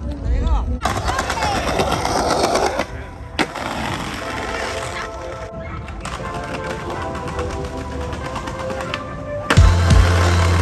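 Skateboard wheels rolling and clattering over paving, with music; a heavy bass beat comes in near the end.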